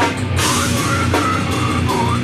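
Heavy metal band playing live: distorted electric guitars and a drum kit, loud and steady, with cymbals coming in about half a second in and a vocalist shouting over it.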